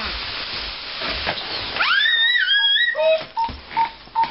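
A baby's high-pitched squeal that rises sharply about two seconds in and is held for about a second, wavering at the top.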